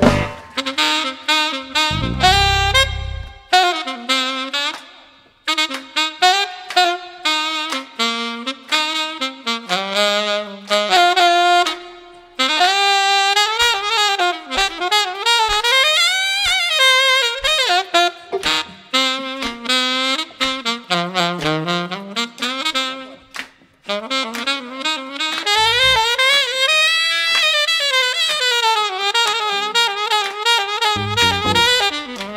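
Saxophone playing an improvised, largely unaccompanied solo: quick running phrases with pitch bends, broken by a few short pauses. The band adds brief low notes twice, about two seconds in and again near the end.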